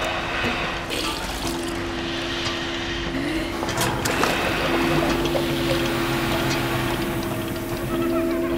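Water sloshing and splashing, with a low, steady music drone underneath.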